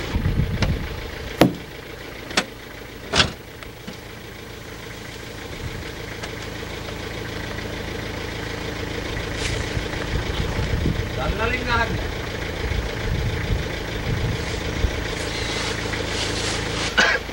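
Vehicle engine idling steadily, with three sharp knocks in the first few seconds.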